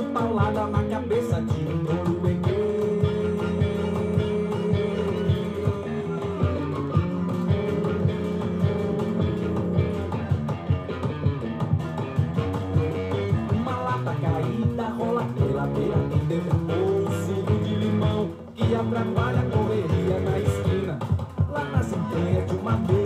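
A Portuguese-language song from a South American 7-inch vinyl single playing on a turntable through speakers. This stretch is guitar and bass over a steady beat, with no lines sung, and the music briefly drops out about eighteen and a half seconds in.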